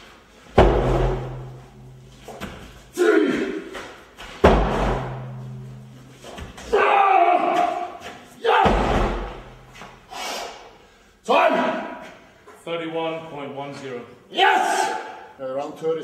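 A huge tractor tire, said to weigh 500 kg, being flipped over and over, each turn landing on the concrete floor with a heavy, deep thud. Between the thuds a man's loud effort grunts and shouts.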